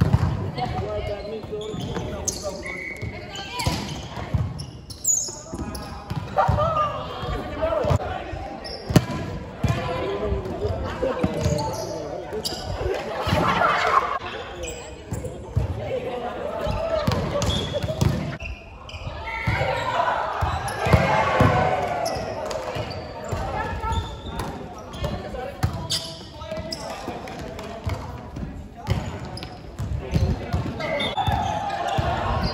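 Volleyball being struck and thudding on a hard sports-hall floor at intervals during a rally, with players' voices calling out. The hall makes both echo.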